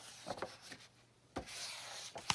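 Handling noise of a picture book on a wooden tabletop: paper and cover scraping and sliding in short irregular strokes, with a brief knock about one and a half seconds in followed by a steady sliding hiss.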